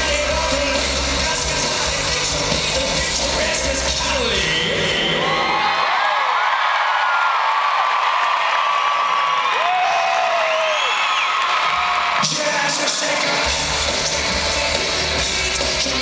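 Live rock band playing loud through an arena PA, dropping out about four to six seconds in. The crowd cheers and whoops for several seconds, then the full band comes back in with a sudden hit about twelve seconds in.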